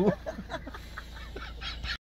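A person laughing, the laugh trailing off into fainter, broken, breathy chuckles, over a low steady rumble.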